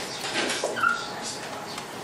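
Dry-erase marker scratching across a whiteboard in a few short strokes, with one brief high squeak about a second in.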